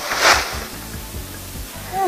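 A bundle of leafy herb branches dropped onto the ground: a short, loud rustle just after the start, over soft background music.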